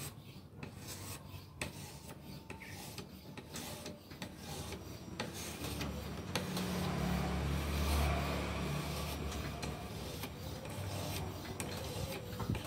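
A fine 1500-grit sharpening stone on a guided fixed-angle sharpener rod, stroked repeatedly along a folding knife's steel edge: a rasping rub of stone on steel. A low rumble swells in the second half.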